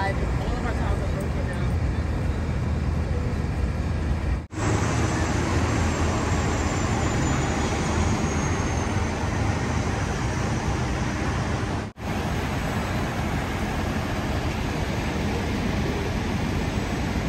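Steady rumble and hiss of city street traffic and idling vehicles, broken twice by abrupt cuts, about four and a half and twelve seconds in.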